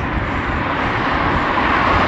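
A car approaching and passing on a wet road, its tyre hiss swelling to a peak near the end, over the steady rush of riding a bike on wet tarmac.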